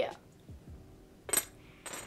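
Ceramic teapot lid set back onto the pot: one sharp clink with a brief high ring about one and a half seconds in, followed by a lighter tick.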